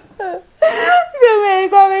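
A woman crying: a short sob near the start, a sharp breath, then a long falling wail from about a second in.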